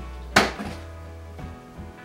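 A plastic water bottle, part-filled with water and shaken with salt, lands upright on a kitchen worktop with one sharp knock about a third of a second in: a successful bottle flip. Background music plays throughout.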